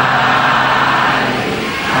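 Buddhist monk chanting in Pali into a microphone, drawing out one syllable on a single low pitch. The note breaks off about 1.7 s in, and another long held note begins at the very end.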